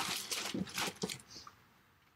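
A few short rustles and light taps of craft supplies being handled, stopping about a second and a half in.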